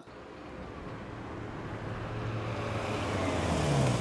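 A car, a taxi, drives up and slows to a stop, its engine and tyre noise growing steadily louder, with the engine note dropping as it slows near the end.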